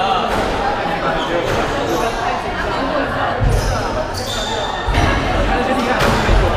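A squash ball thudding dully a few times on the court, twice more loudly, about halfway through and again about five seconds in, over constant chatter in the hall.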